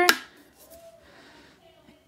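A sharp plastic click, then faint rubbing as the screw-on lid of a Brumate Toddy tumbler is twisted off the cup.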